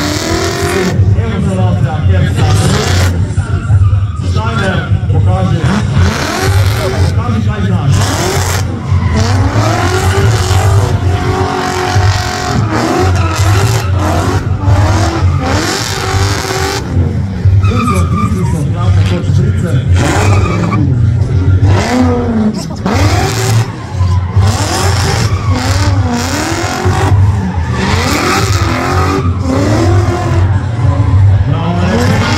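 BMW E30 drift car doing a smoky burnout and sliding, its engine revving up and down over and over while the rear tyres squeal.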